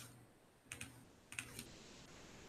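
Faint keystrokes on a computer keyboard: a few quick clicks about two-thirds of a second in and another short run about a second and a half in.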